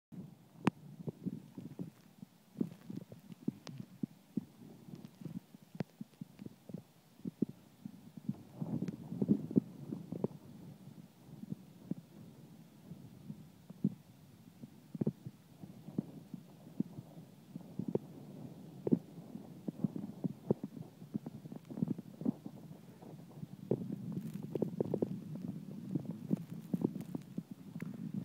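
Wind gusting against a phone's microphone: a low, uneven rumble with many irregular thumps, stronger in gusts about nine seconds in and again near the end.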